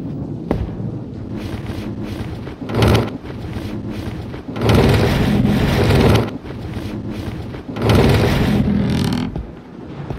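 Film storm ambience: wind gusting and thunder rumbling, rising in three long swells, with a single knock about half a second in.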